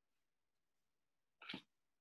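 Near silence on a video call, broken once about one and a half seconds in by a single short, sharp sound.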